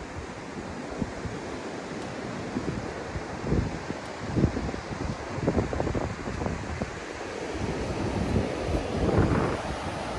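Wind blowing on the microphone with irregular low buffeting thumps, over a steady wash of sea surf.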